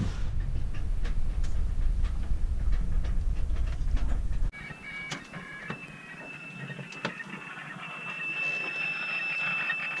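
A loud low rumble, cut off suddenly about four and a half seconds in. Then a radio receiver picking up weather information: faint steady tones and clicks, with a steady high whistle from about eight seconds on.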